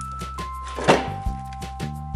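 Background music with a steady beat and held electronic tones; about a second in, one loud thunk as a whole cured ham is set down on the meat slicer.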